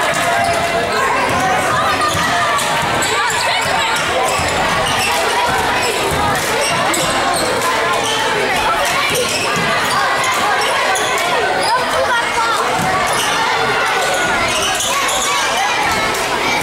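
Basketball bouncing on a hardwood gym floor amid steady crowd chatter and shouting, echoing in a large hall.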